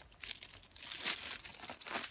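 Dry fallen leaves and grass rustling and crinkling as a hand works in around the base of a porcino mushroom, in irregular bursts with the loudest about a second in.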